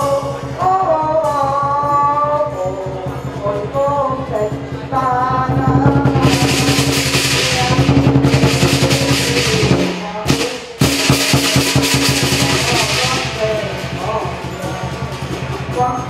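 Lion dance drum and cymbals playing a fast, steady beat. The cymbals crash loudly from about six seconds in; the playing breaks off briefly near ten seconds, then resumes.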